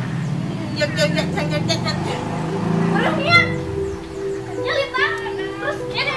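Voices in quick short bursts, then background music with steady held tones entering about two seconds in. More voices speak over the music, with one short loud exclamation in the middle.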